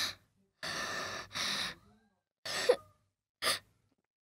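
A person breathing: a run of short, breathy sighs or gasps, four in all, with silence between them.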